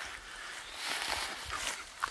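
Shallow creek running over a stone bottom, a steady rushing hiss that swells about a second in, with irregular low rumbling on the microphone.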